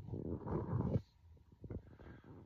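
A man's voice making a low, rough sound about a second long, then a few faint clicks.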